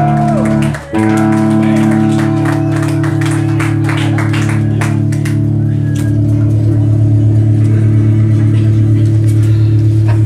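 Amplified electric guitars holding a loud, steady droning chord between songs, cut off briefly just under a second in and then picked up again; from about six seconds a deep low tone pulses rapidly underneath.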